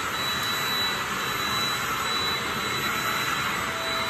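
Shark Rocket stick vacuum running steadily as it is pushed over a wood floor, picking up dog hair: an even rush of air with a thin, steady high whine from the motor.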